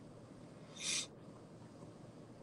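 A single short hiss of breath, such as a sniff, about a second in, over low steady background noise.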